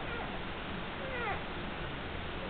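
Shetland sheepdog puppy squeaking with a few short, high, mewing cries that fall in pitch, the loudest pair a little over a second in.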